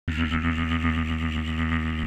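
A low, steady drone with a didgeridoo-like sound, starting abruptly and pulsing about four to five times a second.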